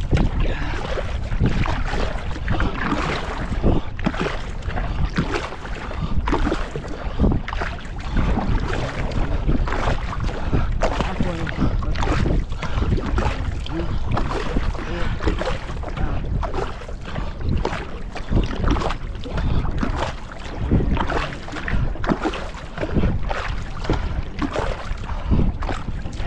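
Paddles of a two-person outrigger canoe stroking and splashing through the water in a steady rhythm, with water rushing along the hull. Wind buffets the microphone throughout.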